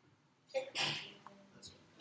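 A person sneezing once, about half a second in: a short voiced onset and then a sharp hissing burst that fades within about half a second.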